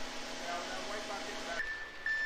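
Steady low engine hum of concrete trucks running on the site. Near the end it gives way to a steady high tone.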